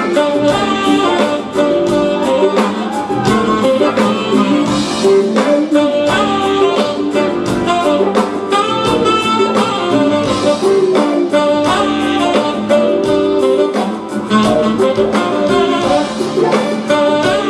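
Live smooth jazz band playing: a saxophone carries the melody over electric guitar, keyboards, bass and drums, with a steady beat.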